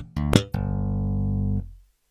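Four-string electric bass guitar: two short, sharply attacked notes, then a low note held for about a second before it is muted and cuts off, leaving silence.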